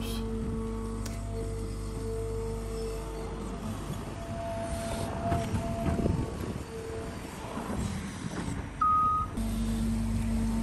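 Caterpillar 320 hydraulic excavator running steadily while it digs, mixed with background music of long held notes.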